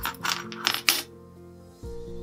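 Nickel-plated metal rings of a wire disentanglement puzzle clinking against each other and the wire frame as the puzzle is set down: several quick, light metallic clinks in the first second.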